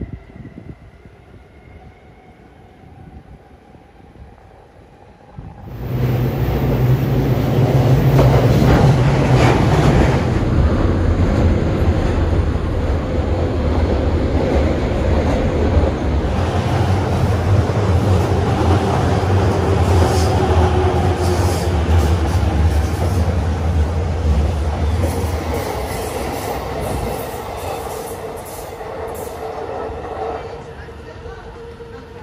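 JR E231 series 500 commuter train on the Chūō-Sōbu local line passing close alongside a station platform. After a few quiet seconds, a loud rush of wheels on rail with a deep rumble starts suddenly about six seconds in. It holds for about twenty seconds, with a run of clicks over rail joints toward the end, and then fades.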